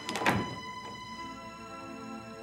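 Slow background music of sustained, held tones, with a single sharp thunk a quarter of a second in.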